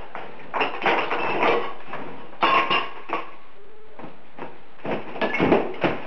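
Ceramic wall tiles being pulled and broken off by hand: bursts of cracking, clattering and scraping, about a second in, again near two and a half seconds, and near the end. The tiles are coming away from backing that has rotted through from moisture.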